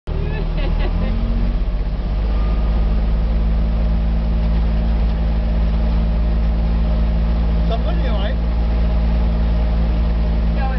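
Kubota utility vehicle's engine running steadily under way at low speed; its note lifts slightly about two seconds in and then holds even.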